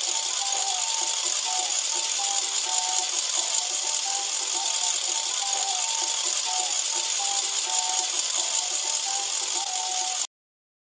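Wooden cog ratchet (Russian treshchotka) being whirled, a dense, unbroken clatter of clicks.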